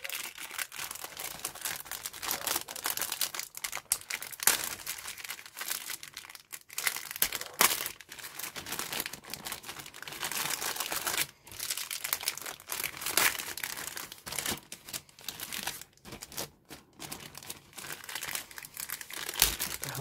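Thin clear plastic bag crinkling continuously with many sharp crackles as hands pull it open and slide a plastic model-kit sprue out of it.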